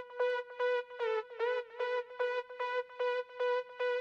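Synthesizer stem from a hardstyle track playing a repeated pitched stab, about three notes a second, with no low end under it. It is being shaped through outboard equalisers. About a second in, the pitch bends down briefly and comes back.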